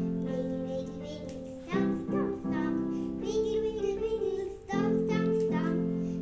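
A young boy singing a children's song over accompaniment of sustained chords, which change about two seconds in and again near the end.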